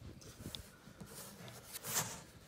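Green plastic lid of an underground electric service pedestal being worked off by hand: faint rubbing and scraping, with a louder scrape near the end.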